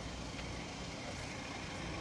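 Steady low rumble of idling truck engines mixed with outdoor background noise.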